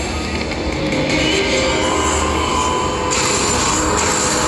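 Walking Dead video slot machine playing its game music and reel sound effects during a spin. About three seconds in the sound turns louder and brighter as the reels expand upward.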